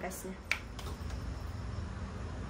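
A single sharp click about half a second in, over a low steady background hum.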